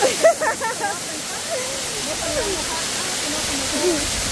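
Waterfall pouring steadily onto rocks, making an even rushing noise throughout. A loud burst of voice comes just after the start, and quieter voices carry on under the water.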